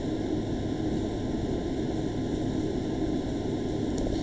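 Steady background hiss with a faint low hum underneath: room tone and microphone noise, with no other event.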